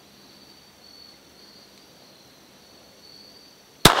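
Faint steady high insect chirring in the woods, then a single sharp shot from a Beretta 81 .32 ACP pistol near the end, its report ringing on through the trees.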